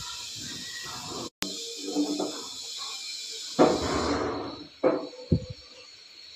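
Soft handling noises of hands pressing and pinching a stuffed paratha dough ball shut, over a steady hiss. A brief louder rustle comes a little past halfway, and a couple of small knocks follow near the end.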